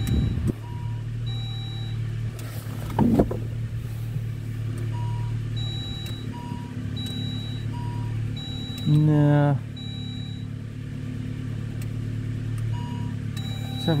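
Saab 9-3 convertible's dashboard warning chime sounding bing-bong again and again over the steady hum of the idling engine, a sign that the electric soft top has stopped part way and failed to complete its cycle. About nine seconds in a brief, loud low tone cuts in for half a second.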